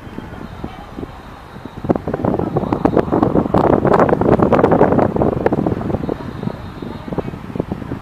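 Wind buffeting the camera microphone in gusts, building to its loudest about halfway through and then easing off.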